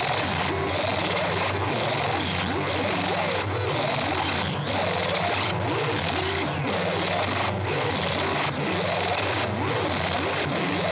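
Live harsh noise music from a tabletop rig of effects pedals and electronics: a dense, unbroken wall of hiss and distortion, with many short whistling pitch sweeps up and down over a low hum, and a brief dip in the hiss about once a second.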